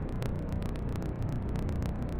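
Steady low rumbling background ambience with faint, scattered light crackles, in the pause after the reading.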